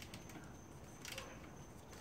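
Faint clicks and taps of gloved hands working among parts in a car's engine bay, a couple of them near the start and one about a second in, over low steady room hiss.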